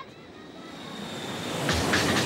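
A rushing noise swell, like wind or surf, growing steadily louder: a build-up in an electronic pop track, with the drums coming in near the end.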